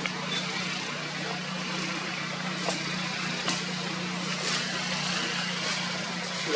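A steady low motor hum, like an engine running nearby, under an even hiss, with a couple of faint clicks about midway.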